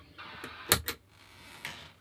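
Two sharp clicks in quick succession a little under a second in, and a softer one later, over faint rustling: handling noise as the plastic talkbox tube is taken out of the mouth and set down.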